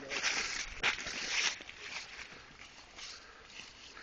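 Footsteps rustling and crunching through dry fallen leaves and brush, busiest in the first second and a half, then quieter.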